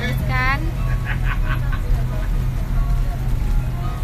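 Steady low rumble of a moving road vehicle, engine and road noise heard from inside its cabin. A short voice sound comes just after the start and brief snatches of speech follow about a second in.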